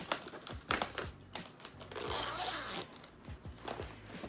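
A makeup train case being handled: a few light clicks as a compact is pressed into the lid's mesh pocket, then a longer rustle of the nylon-covered flap being lifted about two seconds in.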